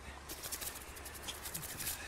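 Close, dense scratchy rustling and crackling, starting about a third of a second in, from leaves and branches brushing against the camera and the hands holding it as it is moved through a tree.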